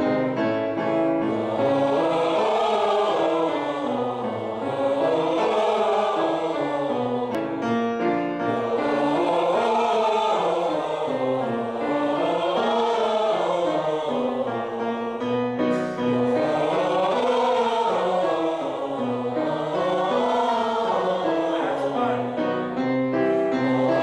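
A group of singers sings a vocal warm-up exercise with piano, running up and down short scale patterns that repeat every few seconds.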